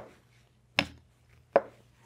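Wooden chess pieces set down on the board: two sharp knocks about three-quarters of a second apart.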